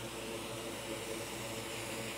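Steady background hiss with a faint hum, unchanged throughout.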